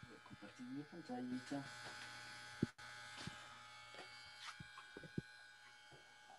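Faint steady electrical buzz made of many thin tones, heard through a video-call audio line. A brief murmur of speech about a second in, and a few sharp clicks.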